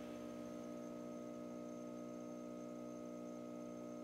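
A steady hum made of several held tones, even and unchanging throughout.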